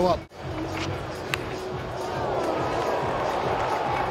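Cricket-ground crowd noise under a steady background music bed, with one sharp knock about a second and a half in.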